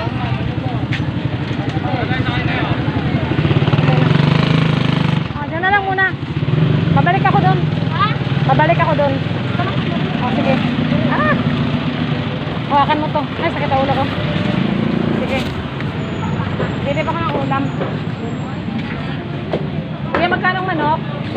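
Motorcycle engine running close by with a steady low rumble, with people's voices talking over it.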